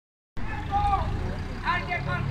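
Street traffic: the engines of a passing car and minivan running at low speed in a steady low rumble, with an indistinct voice talking over it.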